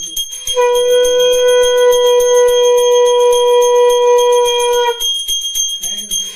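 A hand bell rung rapidly and without pause for a puja arati. A conch shell (shankha) is blown in one long steady note from about half a second in until about five seconds in.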